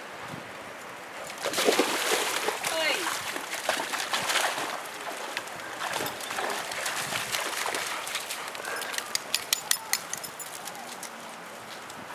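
Indistinct voices talking, with water sloshing and splashing underneath. A quick run of sharp clicks comes about two-thirds of the way through.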